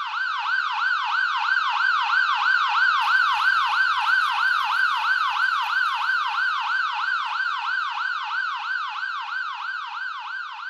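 Electronic emergency-vehicle siren in a fast yelp, its pitch sweeping up and down about three times a second, swelling over the first few seconds and then slowly fading.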